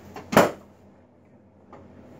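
A single sharp, loud clack about a third of a second in, as a chiropractic drop-table section drops under a thrust adjustment to the knee.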